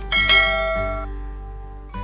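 A click followed by a bright bell-like chime sound effect for a notification-bell tap, ringing out at once and fading away over about a second and a half, over background music.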